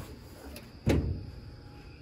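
A single sharp knock about a second in, like a door or panel being knocked or shut.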